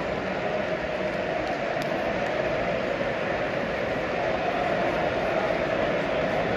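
Football stadium crowd: a steady wash of thousands of fans' voices blended together, growing a little louder in the second half.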